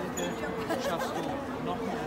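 Voices talking: film dialogue playing from a TV screen.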